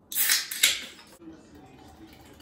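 A Guinness draught can cracked open: the ring-pull pops and gas hisses out in two quick, sharp bursts within the first second, then it goes quieter.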